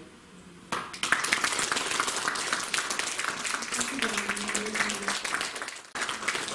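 Audience applauding: dense hand-clapping that starts under a second in and runs until near the end, with a voice heard briefly through it near the middle.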